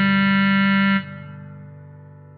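Bass clarinet, with backing accompaniment, holding the song's final note, a low G, which stops about a second in; the accompaniment's last chord then fades away.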